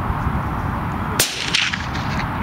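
A single rifle shot from a Sako TRG in .308: one sharp crack about a second in, followed by a shorter trailing report a third of a second later, over steady background noise.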